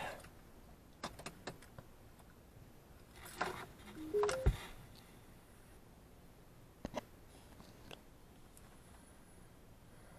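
Ignition keys jangling and clicking as the key is turned, then, about four seconds in, a short rising three-note electronic chime ending in a low thump as the car's electrics and audio power up. A couple more faint clicks follow.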